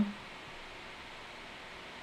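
Steady, faint hiss of background noise with no distinct events.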